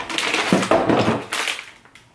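Empty plastic toiletry bottles and packaging rustling and clattering as a hand rummages through a box of empties and pulls out a plastic pouch. It dies away near the end.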